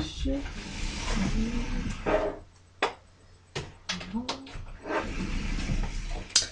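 Rustling and handling noise of someone moving about and picking up objects, with several sharp clicks and knocks in the middle and a few brief murmured vocal sounds.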